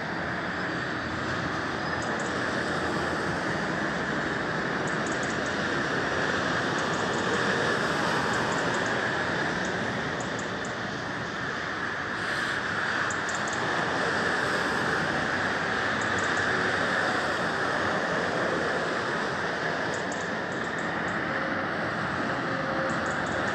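Steady rush of distant motorway traffic, lorries and cars together, swelling and easing slowly as vehicles pass.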